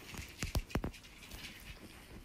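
About four quick knocks on a hard floor in play with a chihuahua and a small ball, bunched within half a second, followed by faint pattering.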